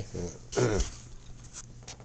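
A man clearing his throat once about half a second in, a short low voiced sound that drops in pitch. A couple of faint clicks follow near the end.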